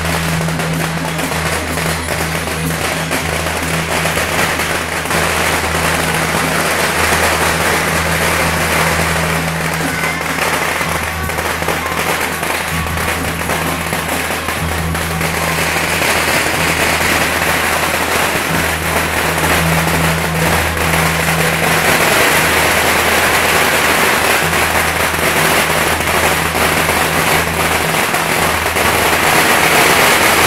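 Strings of firecrackers crackling continuously over music with a steady bass line.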